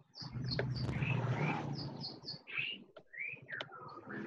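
A bird chirping: two quick runs of three short high chirps, near the start and about two seconds in, with a few lower sweeping calls between, over a low steady hum.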